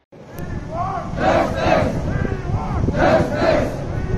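A crowd of protesters shouting slogans in unison, a short two-part chant repeated every second and a half or so over steady crowd noise.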